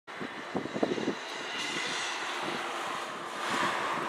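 Boeing 787-9 Dreamliner's GEnx turbofan engines on final approach, a steady jet rush with a high fan whine, swelling louder near the end as the aircraft comes closer.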